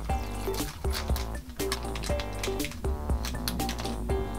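Background music with a steady beat, over the crinkle of a small plastic bag being cut open with scissors.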